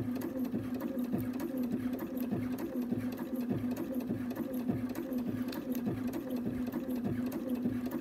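Bernina sewing machine running and stitching through paraglider line, a steady motor hum with a regular stitching rhythm of about two strokes a second, the line feeding through a plastic jig hands-free.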